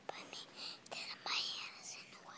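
A person whispering close to the microphone: breathy, hushed speech with no voiced pitch.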